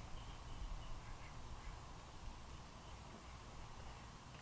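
Faint outdoor background: a low steady rumble, with a bird chirping faintly a few times in the first couple of seconds.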